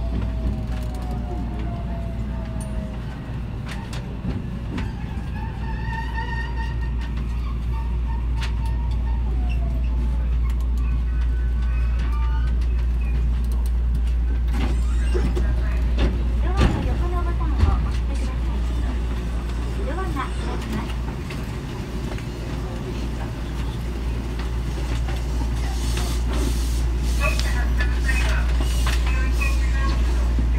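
A JR West 223 series electric train running, heard from on board: a steady low rumble, with a thin motor whine falling in pitch near the start and a few knocks about two-thirds of the way through.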